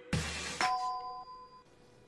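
Buzzr TV channel ident: a short swoosh-like burst with a thud, then about half a second in a bright electronic chime of two tones sounding together that fades away within a second.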